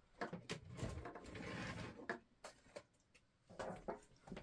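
Faint clicks, small knocks and rustling of things being handled and moved about while a small hammer is fetched, busiest in the first couple of seconds.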